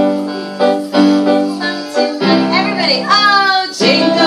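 Electronic keyboards playing held chords in a piano voice, a new chord struck about every half second to second, with a voice singing along in the second half.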